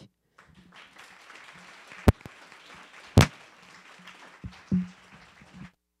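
Audience applauding, with two loud knocks from the handheld microphone being handled about two and three seconds in. The sound cuts off suddenly near the end.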